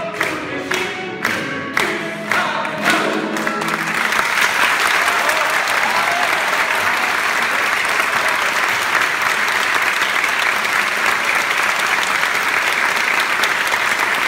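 A male singer with a small chamber ensemble (flute, harp, cello) plays the last bars of a song over a regular beat. About four seconds in, the music ends and the audience breaks into loud, steady applause.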